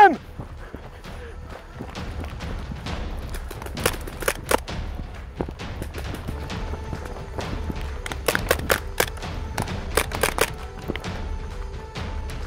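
Magfed paintball marker shots in quick groups of three or four: one group about four seconds in, and two more near the end. Under them run footsteps and movement noise, with background music coming in about halfway through.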